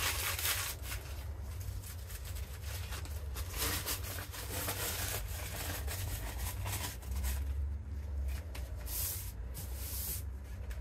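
Crumpled plastic snack bag crinkling and rubbing as it is pressed and smoothed flat over a painted board by gloved hands, in irregular scratchy strokes.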